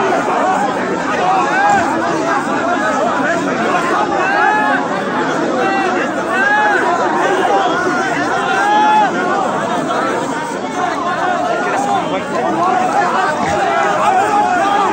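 A large crowd of funeral mourners, many voices calling out at once in a loud, continuous mass of overlapping shouts and talk.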